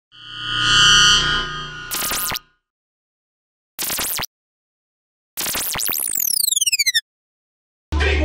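Electronic intro sound effects for a glitching logo animation: a synth swell builds over the first two seconds, then short digital glitch bursts come between gaps of silence. The last burst stutters with falling sweeps for about a second and a half and cuts off suddenly.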